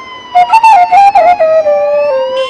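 A siren-like electronic wail, its pitch slowly falling and then starting to rise again near the end, with a quick run of stepped higher notes over it about half a second in.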